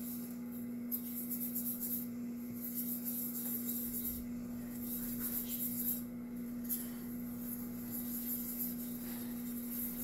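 A whisk scraping and stirring thick cake-mix batter in a stoneware baking pan, in irregular strokes with brief pauses. Under it runs the steady hum of an electric ice cream maker churning.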